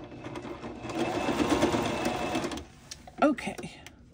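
Singer electric sewing machine running a straight stitch through layered fabric scraps. It builds up over the first second, runs steadily and then stops after about two and a half seconds. A brief voice sound follows near the end.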